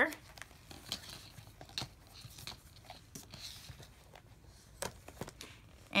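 Paper planner pages and plastic tab dividers rustling and shuffling in an A5 ring binder as they are gathered together and the cover is folded shut, with a few light clicks and taps.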